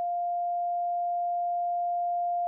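A single steady beep at one mid pitch, held unchanged, that replaces all of the recorded 911 call's audio: a redaction bleep masking part of the caller's reply.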